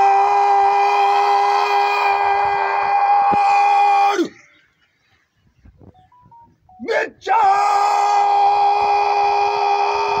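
Two long, drawn-out drill commands shouted by the leader of a rifle guard of honour. Each word is held on one steady pitch for about four seconds and then drops off at the end. The second command starts about seven seconds in.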